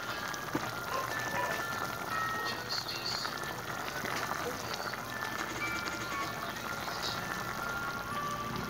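Pot of fish paksiw simmering, giving a steady bubbling hiss, with soft music in the background.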